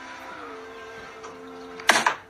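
A small electric appliance humming steadily against a glass bottle, stepping up slightly in pitch about half a second in, then a sudden loud pop near the end.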